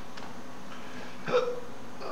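Steady background hiss of the room and microphone, broken about a second and a half in by a short vocal "uh" and a faint click near the start.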